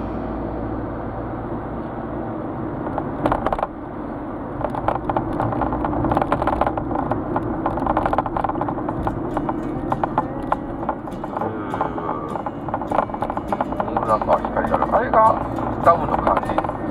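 Car on the move, heard inside the cabin: a steady engine and road-noise drone, with frequent small clicks and knocks from about four seconds in.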